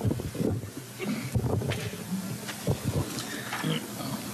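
A desk gooseneck microphone being gripped and adjusted by hand, heard through that same microphone as a run of irregular bumps, rubs and scrapes.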